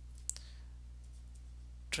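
A single sharp click about a third of a second in, a stylus tapping a drawing tablet, over a steady low electrical hum in the recording.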